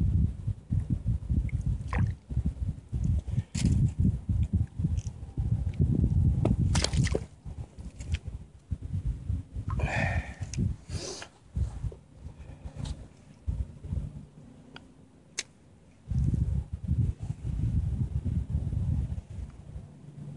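Low buffeting rumble on the microphone that comes and goes in gusts, loud for the first several seconds and again near the end, with scattered small clicks and knocks in between.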